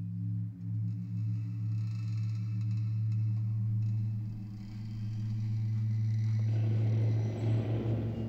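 Low, steady droning hum of a horror film's sound design under the opening titles. About six and a half seconds in, a rougher rumbling noise swells in over the drone.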